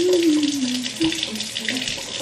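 Kitchen tap running steadily into a sink for rinsing cherries. Over the water a low tone slides down in pitch during the first second, then comes back briefly and wavers lower.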